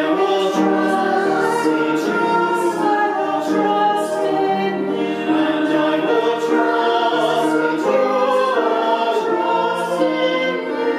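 A small mixed group of men's, women's and children's voices singing a hymn together, the chorus line "And I will trust in You alone" sung twice.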